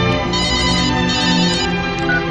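Mobile phone ringtone sounding in two short bursts over orchestral background music.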